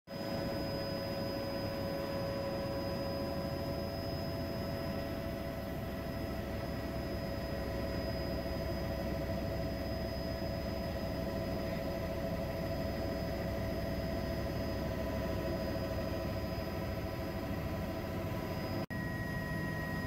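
Helicopter heard from inside the cabin: a steady engine drone with several constant high whining tones. There is a brief dropout about a second before the end.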